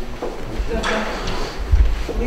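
Speech, with low thumps about half a second in and near the end, and a sharp click about a second in.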